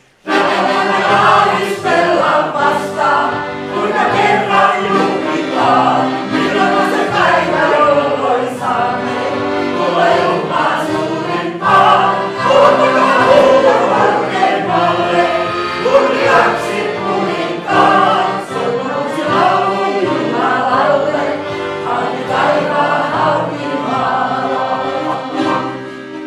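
A group of people singing a Christian song together, the sound dying away right at the end.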